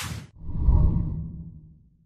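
Intro sound effect: a short, sharp swoosh, then a deep low rumble that swells and fades away over about a second and a half.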